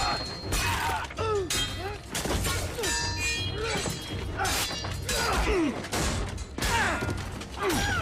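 Sword-fight sound effects: repeated clashes of steel blades, several with a high metallic ring, thuds of blows, and men's short grunts and cries.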